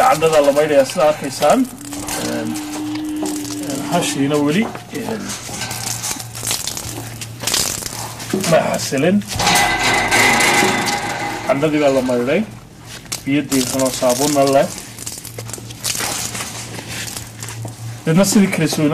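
People's voices in short stretches, with a steady low hum underneath.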